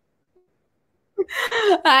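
About a second of dead silence, then a woman laughs as she begins a spoken greeting.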